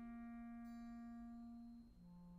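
Wind band playing very softly: a single held note that fades away just before the end, with a new, lower held note coming in right at the end.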